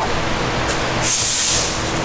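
Whoosh transition effect: a rush of airy hiss that swells about a second in and fades away just before the end, over a low steady hum.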